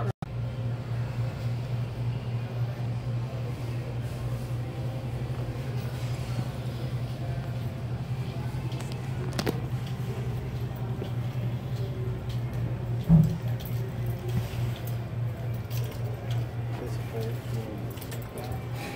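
Steady low machine hum throughout, with a single sharp thump about 13 seconds in.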